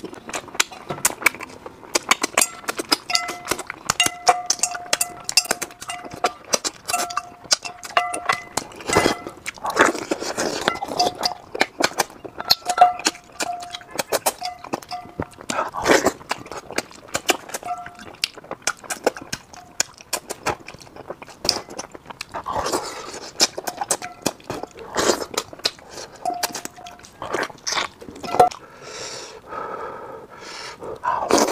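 Close-miked mukbang eating sounds: a person biting, sucking and chewing braised grass carp, with dense irregular wet smacks and lip clicks and a few heavier slurps. A faint, intermittent high tone sits underneath.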